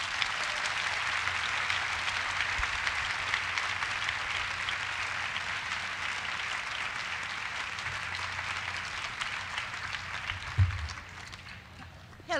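Audience applauding steadily, dying away over the last couple of seconds, with a single thump about ten and a half seconds in.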